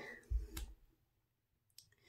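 Two soft, short knocks about half a second in, then near silence broken by one faint click near the end.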